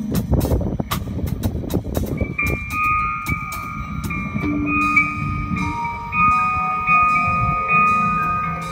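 Live electric jazz-rock band playing: busy drums and cymbal crashes for the first couple of seconds, then long held high notes ring out over the bass and a quieter groove.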